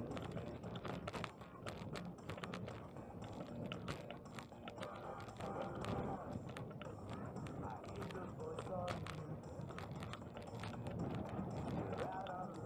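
Bicycle rolling over a paved sidewalk, rattling with many irregular clicks and knocks, over street noise. Indistinct voices of passersby are heard faintly now and then.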